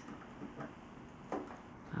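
A few faint clicks of a key working a motorcycle's lock, with one sharper click about a second and a half in.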